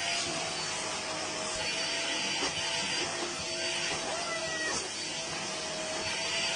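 A vacuum cleaner running with a steady whine and rush of air while a cat clings to its hose.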